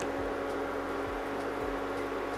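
Induction hob running under a pot, giving a steady electrical hum with a faint fan-like hiss.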